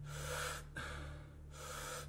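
A man breathing deeply and rapidly through the mouth, a strong inhale followed by a let-go exhale, about three breath sounds in two seconds: power breathing to load up on oxygen before a breath hold.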